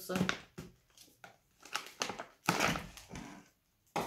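Plastic foil bag of Lindt Lindor chocolates crinkling as it is handled and pulled at the top, in a series of short rustles, the loudest about two and a half seconds in.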